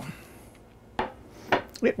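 A single sharp knock about a second in, with a few faint handling sounds after it.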